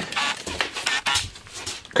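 A can of Great Stuff Window & Door spray foam being picked up and handled: a run of quick knocks and rattles, about four a second, some with a brief metallic ring.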